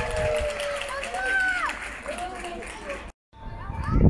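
Several voices shouting and calling out across a football pitch in long, drawn-out calls over a low wind rumble on the microphone. A little after three seconds the sound cuts out completely for a moment, then returns with the wind rumble louder.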